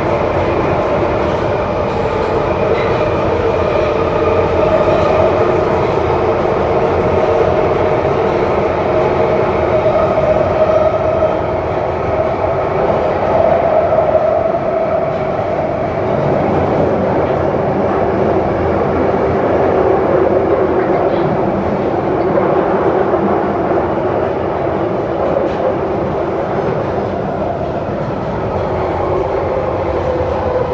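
Bakerloo line 1972 stock Tube train running through a tunnel, heard from inside the carriage: a steady, loud rolling roar with a droning hum.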